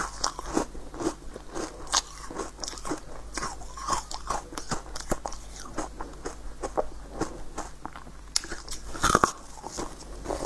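Close-miked biting and chewing of a crunchy pink corn-cob-shaped treat: irregular sharp, crackly crunches throughout, with a louder crunch about nine seconds in.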